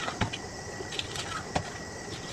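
Plastic stretch film being pulled off a hand roll and wrapped around a stacked pallet of bags, with a few sharp clicks and snaps.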